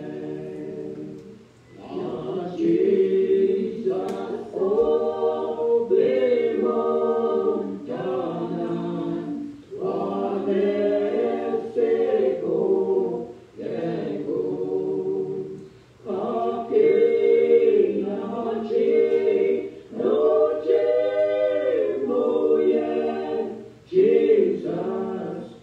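Choir singing an Ojibwe-language hymn unaccompanied, in phrases a few seconds long with short breaks between them.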